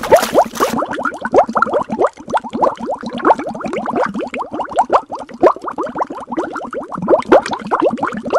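A splash, then a steady run of cartoon underwater bubbling: quick bloops that each rise in pitch, several a second.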